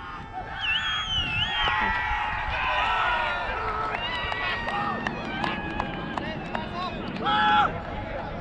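Cricket players shouting and cheering in celebration as the match is won, several voices calling over one another, with one loud drawn-out shout near the end.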